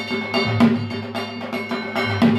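Puja percussion: a metal bell or bell-metal gong struck in a fast steady rhythm, about six or seven strokes a second, ringing on between strokes, with a couple of heavier, deeper drum beats.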